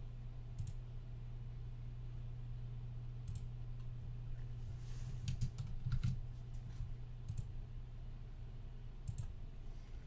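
Scattered clicks of a computer keyboard and mouse: single clicks every few seconds with a short cluster about five to six seconds in, over a steady low hum.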